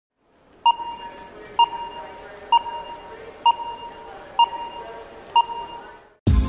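Six electronic pings evenly spaced a little under a second apart, each a clear high tone that rings out briefly, over a faint low bed of sound.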